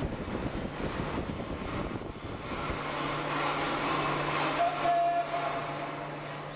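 Shaking table running a sweep vibration test, with a steady low hum and continuous rattling rumble as a 900 kg server rack rocks on seismic isolation feet. A brief squeal rises out of it about four and a half seconds in, when the noise is loudest.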